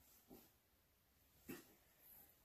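Near silence: room tone with two faint, brief sounds, one about a third of a second in and one about a second and a half in.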